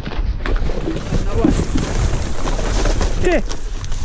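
Wind buffeting the microphone in a low, steady rumble, with scattered rustles and clicks of plastic and rubbish being disturbed. A man calls out briefly near the end.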